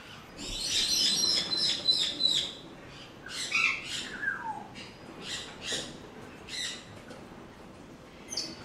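Parrots screeching and squawking: a dense run of harsh calls in the first two seconds, a call sliding down in pitch around four seconds in, then shorter single squawks spaced out after that.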